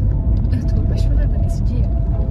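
Steady low road and engine rumble inside a moving car's cabin, with a voice faintly over it.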